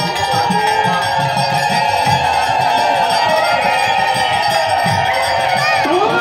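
Bengali kirtan music: a harmonium holding a steady drone of chords, with khol drums beating a running rhythm and hand cymbals (kartal) ringing.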